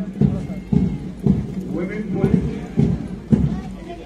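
Marching boots of a contingent striking the ground in unison, a sharp thud about twice a second, with voices in the background.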